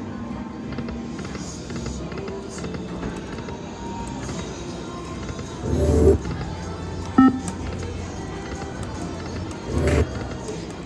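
Video slot machine game music and sounds over a steady background of casino noise. There is a louder burst of sound about six seconds in, a short chime about a second later, and another burst near the end.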